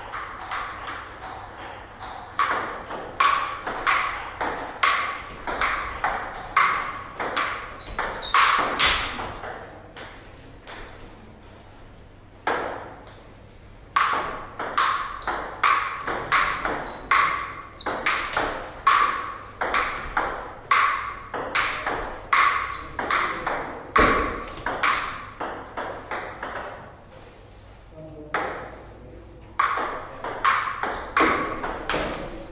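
Table tennis ball clicking back and forth off paddles and table in two long rallies, the first from about two to ten seconds in and the second from about fourteen to twenty-four seconds in, with a few more hits starting near the end.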